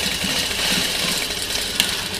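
Remington sewing machine running steadily as it stitches dark fabric, with one sharp click near the end.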